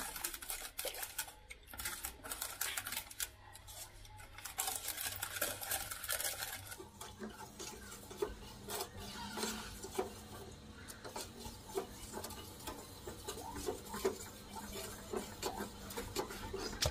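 A ladle stirring a thin milk mixture in an aluminium saucepan, with irregular light scrapes and taps against the bottom and sides of the pan.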